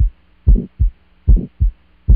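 Heartbeat sound effect: pairs of deep thumps, lub-dub, repeating about every 0.8 s, over a faint steady low hum.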